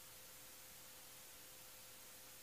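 Near silence: faint steady hiss of room tone, with a faint steady tone underneath.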